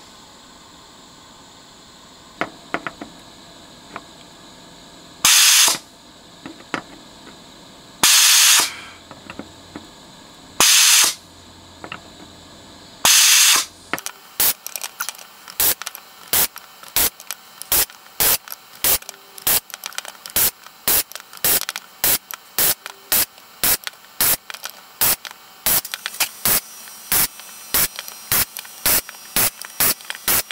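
Metcal desoldering gun's vacuum suction hissing as it pulls molten solder off the pins of a multi-pole slide switch: four longer bursts of about half a second each, then a fast run of short bursts, two or three a second, as the nozzle moves from pin to pin.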